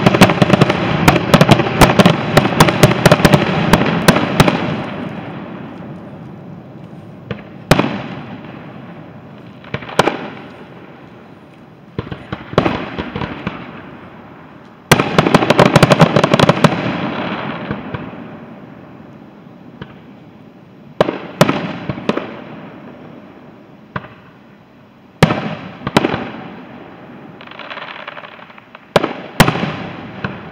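Aerial firework shells bursting: a rapid volley of bangs and crackles over the first few seconds, another dense volley about halfway through, and scattered single bangs in between and after. Each burst trails off in a long fading rumble.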